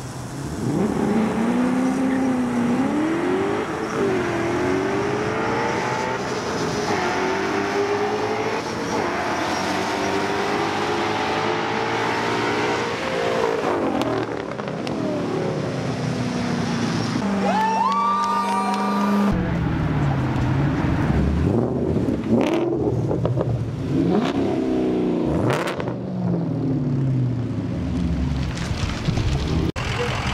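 V8 engines of a Ford Mustang 5.0 GT and a Hemi Dodge Charger at full-throttle acceleration. Engine pitch climbs and falls back with each upshift, over several runs, with a couple of sharp knocks in the later part.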